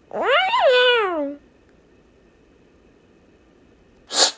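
A cartoon cat's single meow, rising and then falling in pitch, about a second and a half long.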